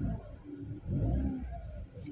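Toyota hatchback's engine being revved while stationary: a low rumble that swells and falls back, with the biggest rise and fall in pitch about a second in.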